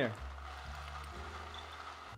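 Pot of hot chicken broth simmering with a soft, steady bubbling hiss as dry elbow macaroni is poured in from its cardboard box.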